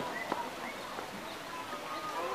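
Faint background voices of people chattering, with one sharp click about a third of a second in.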